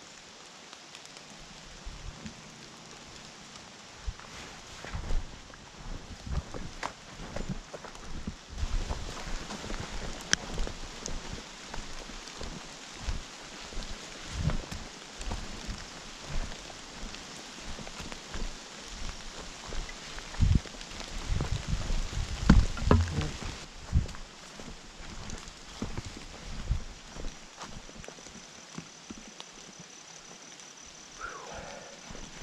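Hiker's footsteps through fallen leaf litter on a forest trail, with a wooden walking stick tapping and thudding the ground in an irregular rhythm; the steps come thickest and loudest about three-quarters of the way through.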